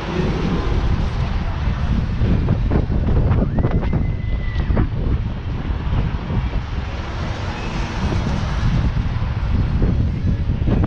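Wind buffeting the microphone of a camera carried on a spinning tall swing ride, a steady low rush throughout. About three and a half seconds in, a steady high tone sounds for about a second.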